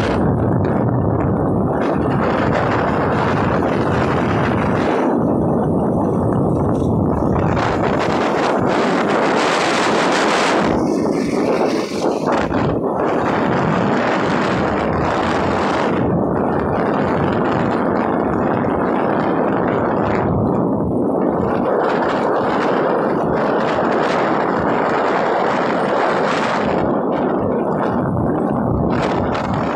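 Loud, steady wind buffeting on a phone microphone carried on a moving motorcycle, drowning out everything else, with a brief dip about twelve seconds in.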